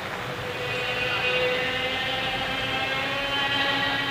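Orchestral skating program music holding a long sustained chord that swells from about half a second in, as crowd applause fades underneath.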